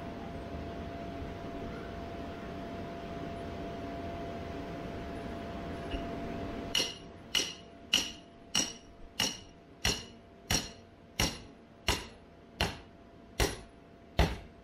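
A hammer driving an anchor stake into the ground for a bounce house: a steady run of sharp, ringing strikes, about three every two seconds, starting about halfway through. Before the strikes there is a steady hum.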